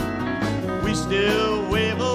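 Live country band playing: strummed acoustic guitar, electric guitar and drums, with a male voice singing the melody from about a second in.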